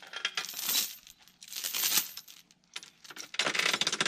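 Steel chain links clinking and jangling as they are gathered by hand, in several bursts with short pauses between.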